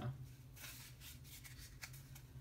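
Faint rustling and scratching of paper being picked at by hand, peeled from where it is stuck, with a light click near the end.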